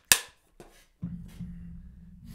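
A wooden film clapperboard snapped shut once, a single sharp crack with a short ringing tail, marking the recording so the audio can be synced. About a second later a low steady hum comes in.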